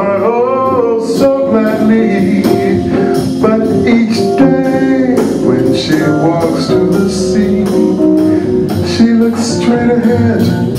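Live jazz organ trio playing: organ, electric guitar and drums, with a singer's voice over the band.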